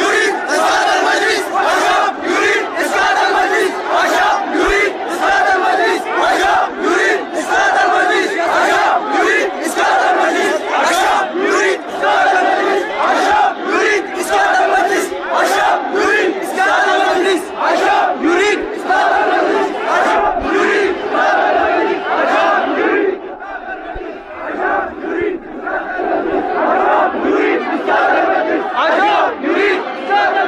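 A large crowd of worshippers chanting loudly together in unison, many voices massed into one continuous, pulsing chant. The chant dips briefly about three-quarters of the way through, then carries on.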